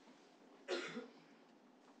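One short cough from a person, a little under a second in.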